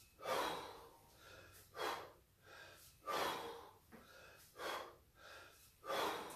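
A man breathing hard from exertion during kettlebell snatches: strong, noisy breaths about every second and a half, in time with the swing of the bell.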